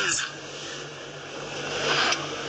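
Steady cabin noise inside a car: an even rush with a low, steady hum beneath it.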